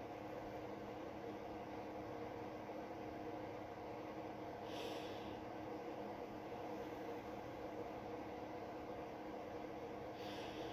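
Faint steady low hum of background noise, with one short breath-like hiss about halfway through.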